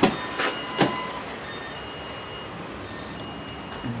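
A 2008 Ford Edge's 3.5 L V6 idling steadily while it warms up, its thermostat not yet open. Three sharp knocks come in the first second, and a thin high whine runs through the middle.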